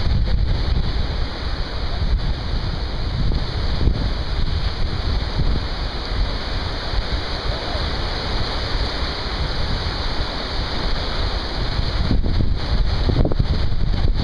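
Small waves washing up on a sandy beach, a steady hiss of surf, with wind buffeting the microphone in a low rumble.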